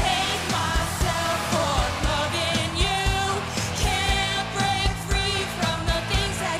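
A woman singing a pop song, with vibrato on long held notes, over a backing track with a steady beat.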